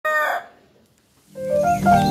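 A short, loud rooster call, cut off after under half a second, then a pause; background music with sustained low notes and a stepping melody comes in just past halfway.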